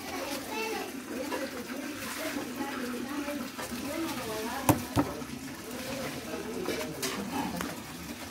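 Indistinct background talk, including a child's voice, in a small room, with two sharp clicks or taps close together about midway through.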